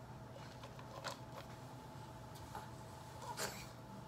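Quiet room with a faint steady hum and a few small, soft clicks, the clearest about a second in and near the end.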